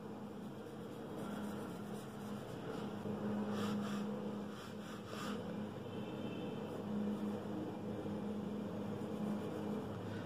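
Steady low background hum and hiss, with a few faint soft scrubbing sounds of a paintbrush working paint in a plastic watercolour palette, about three and a half and five seconds in.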